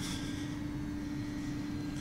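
A steady background hum with a single constant tone, even and unchanging throughout.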